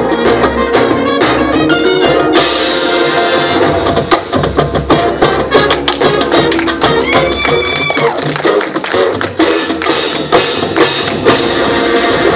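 High school marching band playing its field show: sustained wind parts over drums and front-ensemble percussion, with many sharp percussion strikes.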